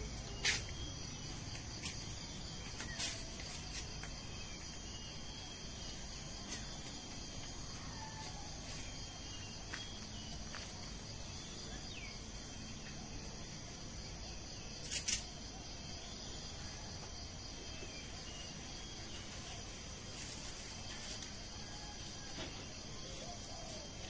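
Steady insect chorus: several constant high-pitched chirring tones over a low background hiss. Brief sharp sounds stand out about half a second in and again, loudest, as a quick double sound about fifteen seconds in.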